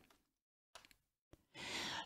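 Near silence, then about a second and a half in a faint in-breath as the woman draws breath before speaking.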